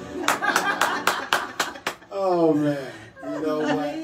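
Hand claps, about seven quick even claps at roughly four a second, as a song ends; then voices talking with a chuckle.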